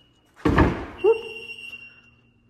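A house door into the garage swung open, with a sudden loud whoosh about half a second in and a short rising squeak about a second in. A thin, steady, high electronic beep tone sounds through much of it.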